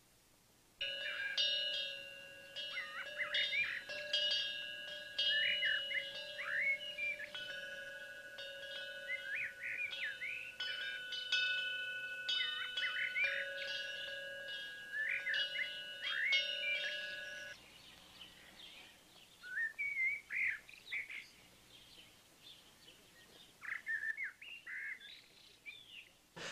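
Chimes ringing with repeated light strikes over a few held tones, with birds chirping. The chimes stop abruptly about two-thirds of the way through, leaving scattered faint bird chirps.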